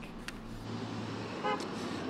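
Urban street traffic noise picked up by an outdoor live microphone, with a single short car-horn toot about one and a half seconds in. A low electrical hum runs under the first second or so.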